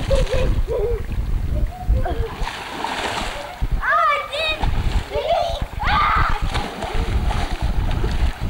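Children swimming and splashing in a swimming pool: water splashing in bursts, with indistinct children's shouts and a high, rising call about four seconds in.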